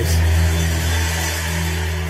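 Background music under a sermon: a sustained low keyboard drone with a few held notes above it, and a wash of noise that fades away in the first second or so.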